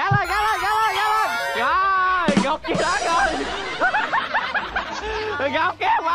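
Children shouting and laughing over edited-in music, with a brief rushing burst of noise about two and a half seconds in.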